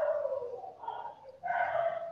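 A dog making two drawn-out calls of steady pitch, the second starting about a second and a half in.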